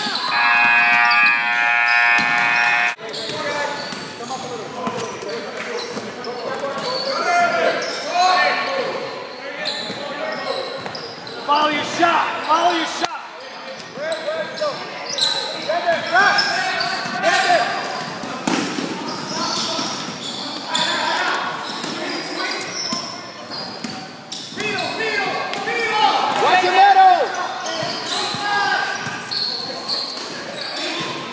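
Basketball game in an echoing gym: voices calling out over a ball bouncing on the hardwood court, with short knocks throughout. A steady buzzer-like tone sounds for about three seconds at the start, then cuts off sharply.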